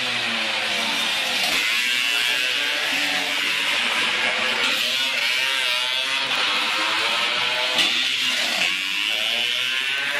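Modified two-stroke Vespa racing scooter engines revving hard, their pitch rising and falling over and over as the scooters accelerate and pass. A short sharp crack about eight seconds in.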